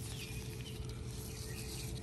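Quiet outdoor garden ambience: a steady low rumble and faint hum, with a couple of short, faint, high falling chirps in the first second.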